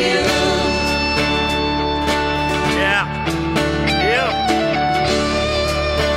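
A worship song performed live: voices singing over instrumental accompaniment, with long held notes.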